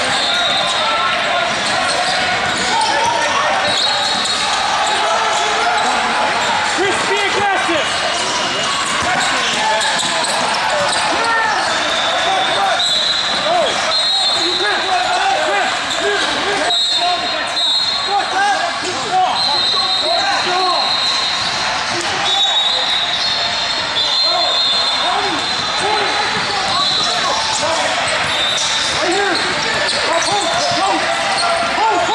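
Basketball game din echoing in a large hall: many overlapping distant voices, sneakers squeaking on the court and a ball bouncing, with no single sound standing out.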